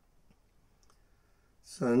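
Near silence broken by a few faint clicks, then a man's unaccompanied voice starts the next sung line of a Sikh hymn (shabad) near the end.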